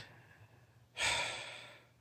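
A man sighing: one long breath out, starting about a second in and fading away, after a short click at the start.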